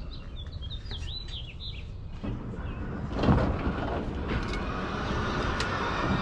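Small birds chirping in quick short calls for the first two seconds. After that a steady rushing noise sets in, with a thump about three seconds in.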